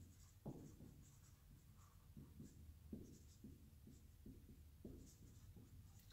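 Dry-erase marker writing on a whiteboard: a faint run of short strokes and squeaks, the first and loudest about half a second in.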